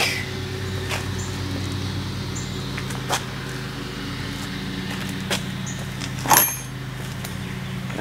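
A steady low machine hum, with a few short clicks about three and six seconds in.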